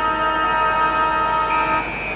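A loud, steady horn blast sounding several tones at once over the noise of a crowd. A higher tone comes in about a second and a half in as the main chord cuts off near the end.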